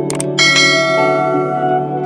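Subscribe-button animation sound effect: a quick double mouse click, then a bright notification-bell ding that rings out and fades over about a second and a half. Soft new-age background music plays under it.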